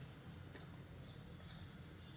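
Oil heating in a nonstick kadai on a gas stove, heard faintly: a steady low hum with a few light ticks.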